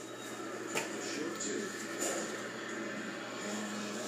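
Faint, indistinct voices in the background, with a few small clicks and a low steady hum.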